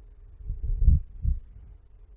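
Microphone handling noise: three dull, low thumps in quick succession about a second in, as the clip-on microphone rubs and knocks against clothing while the wearer moves.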